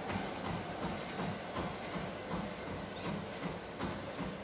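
Footfalls of a runner on a motorised treadmill, an even beat of about three steps a second, with the running belt underneath.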